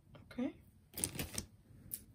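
A quick clatter of small hard clicks about a second in, with one more near the end: a glass-bead bracelet and other small jewelry pieces being set down and knocking together on the table.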